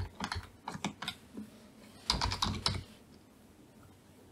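Typing on a computer keyboard: a few scattered key clicks in the first second, then a quick run of keystrokes about two seconds in.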